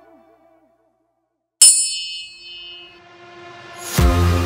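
A single bright bell ding from the workout timer, ringing out for about a second as it marks the end of the rest break and the start of the next work interval. Background music fades out before it and swells back in near the end.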